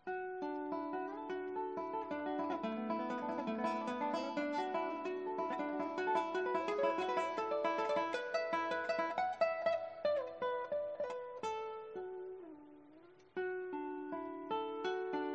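An ensemble of classical guitars playing a dense passage of many plucked notes together. The music fades out about 11 to 13 seconds in, leaving one lingering note, and a new phrase begins just before the end.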